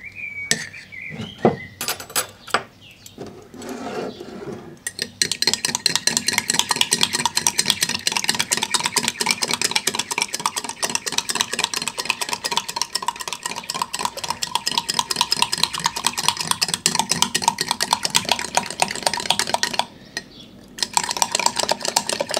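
Metal teaspoon beating egg yolk and sugar by hand in a small ceramic cup: a few separate clinks of the spoon against the cup, then about five seconds in a fast, steady run of spoon-on-cup clicks that breaks off briefly near the end and starts again.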